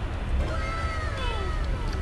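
A single drawn-out, high-pitched animal call that falls steadily in pitch over more than a second.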